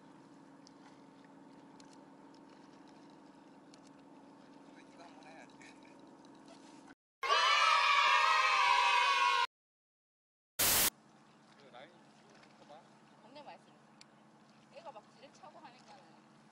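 A loud edited-in voice sound effect lasts about two seconds, with downward-bending pitch. It is set off by sudden cuts to silence and followed a second later by a short loud burst. Around them the field sound is faint, steady background.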